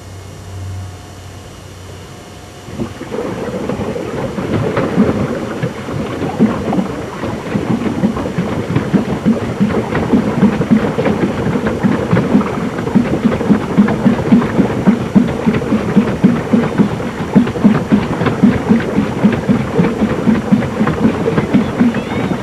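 Pedal boat's paddle wheel churning the pond water, starting about three seconds in and going on as a loud, rhythmic splashing, a few strokes a second.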